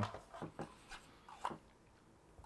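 A few faint, light clicks and taps from hands handling the tabletop game's bird pieces and wire on the cardboard board, the clearest about half a second in and again near a second and a half.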